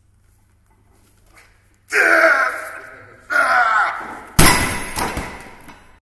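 Two loud yells of effort, then a 210 kg strongman log dropped from overhead onto the floor, landing with one heavy thud about four seconds in and ringing out over about a second.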